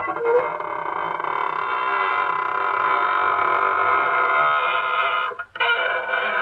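A door creaking open slowly: one long, drawn-out squeak of about five seconds that cuts off suddenly near the end. It is the signature creaking-door sound effect of a 1940s radio broadcast, heard through the narrow sound of an old recording.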